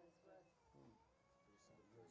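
Near silence, with faint distant voices murmuring.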